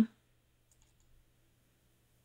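Near silence: faint room tone with a steady low hum, and a few barely audible high ticks about a second in.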